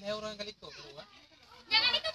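Faint voices of people talking in the background, one of them fairly high-pitched, with a louder voice burst near the end.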